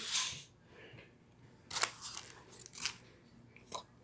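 Faint mouth sounds of someone chewing a bite of burrito: a short hiss at the start, then a scatter of short clicks and smacks through the second half.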